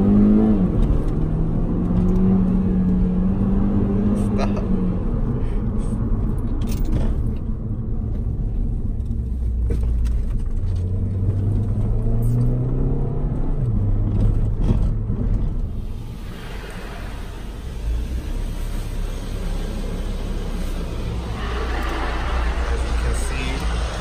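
Mini Cooper S R56 turbocharged four-cylinder engine accelerating hard, heard from inside the cabin. The revs climb and drop at a gear change just after the start, then climb again and drop at another shift around thirteen seconds in. After about sixteen seconds it settles to a quieter, steady run.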